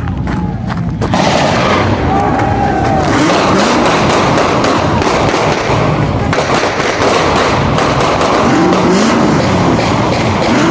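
Loud street din at a car sideshow: a crowd's voices and car engines, cut through by many sharp pops and bangs. Engines rise and fall in pitch as they rev near the end.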